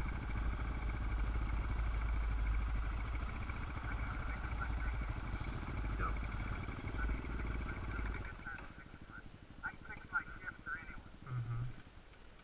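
Dirt bike engine running at low speed, heard through a helmet-mounted camera, with a steady low rumble that cuts out about eight seconds in as the bike stops. Faint voices come through near the end.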